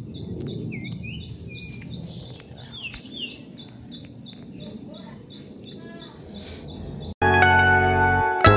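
A bird repeating a short high chirp, evenly about three times a second, with a few other bird notes over a low outdoor background din. Music cuts in abruptly about seven seconds in.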